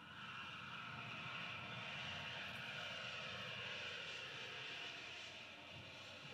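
Jet airliner engine noise from a film soundtrack played through theatre speakers: a steady rush that cuts in suddenly and eases slightly toward the end as the four-engine jet passes low over the runway.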